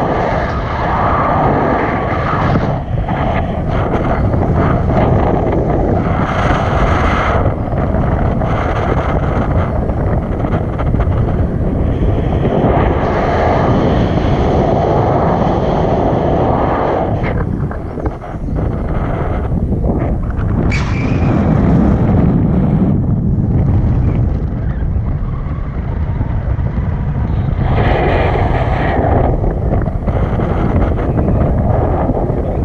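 Airflow of a paraglider in flight buffeting the camera's microphone: loud, continuous rushing wind noise that swells and eases in gusts, dipping briefly a little past the middle.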